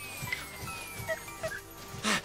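Soft cartoon background music: a faint high tone slides slowly downward, with a couple of small short blips about a second in.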